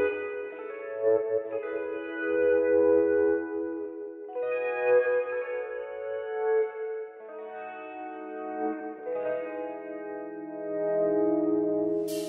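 Instrumental song intro: sustained, echoing guitar chords with no vocals, the chord changing every couple of seconds.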